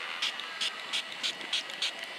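Handheld battery fan with a water mister, its trigger worked in a quick run of short hissing sprays, about five a second, over the fan motor's steady whir.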